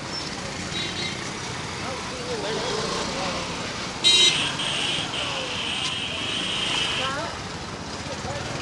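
Busy street traffic with crowd chatter; about halfway through, a vehicle horn sounds loudly and is held for about three seconds.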